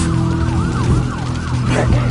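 Emergency vehicle siren sounding in rapid up-and-down yelp sweeps, over a steady low music drone.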